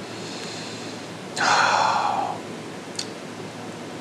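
A man's long, breathy exhale after swallowing a sip of beer, a sigh of appreciation, loudest about a second and a half in and fading over about a second. A faint intake of breath comes before it and a small mouth click near the end.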